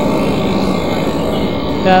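Steady roadside background noise with a faint hum. A man says a short "yeah" near the end.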